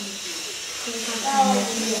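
Quiet speech: a voice speaking softly in short, broken fragments over faint room hiss.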